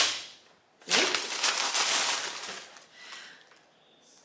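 Paper packaging rustling as a box is unpacked and a printed card is pulled out: a sharp crackle about a second in that fades off over the next two seconds.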